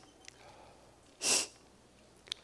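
A man's single sharp sniff into a close microphone, about a second in, short and noisy against otherwise quiet room tone.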